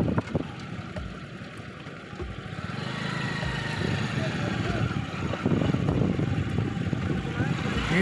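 Rumble of the vehicle being ridden in, engine and road noise while moving slowly, dipping quieter for a second or two about a second in.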